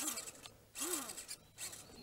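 Small 130-size electric motor and plastic gearbox of a WPL B24 1/16-scale RC crawler whirring in short bursts as its wheels scrabble on rutted mud: once for about half a second at the start and again briefly later.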